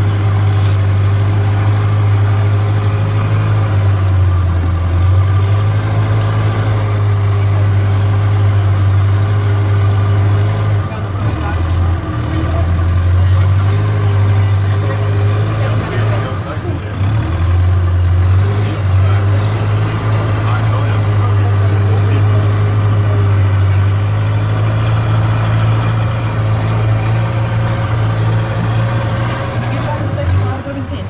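Longtail boat's engine running steadily under way, its low note easing off briefly a few times around the middle.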